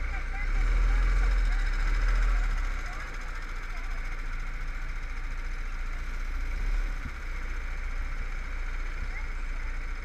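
Go-kart engine running at low revs as the kart creeps forward, a deep steady rumble that is louder for the first three seconds and then settles.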